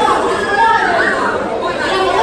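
Speech only: people talking on a stage over microphones.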